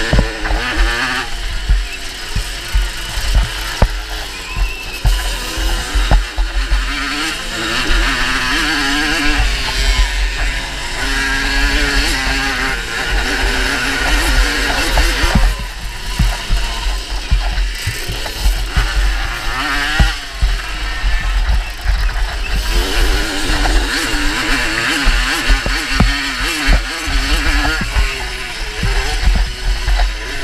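Small moped engines revving up and down as they are ridden round a dirt track, their pitch rising and falling with the throttle, with heavy wind buffeting on the microphone and frequent knocks from the rough ground.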